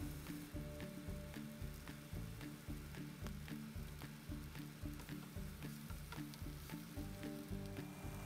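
Quiet background music with a steady low beat, over faint sizzling of sliced green bell peppers and onions sautéing in olive oil in a frying pan.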